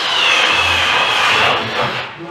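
A power tool's motor running with a steady high whine over a rushing noise for about two seconds, then stopping.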